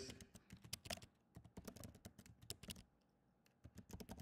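Computer keyboard typing: a quick run of faint key clicks as a phrase is typed out, with a brief pause near the end.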